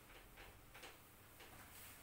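Faint strokes of a cloth wiping a whiteboard, a soft rub repeating about two to three times a second.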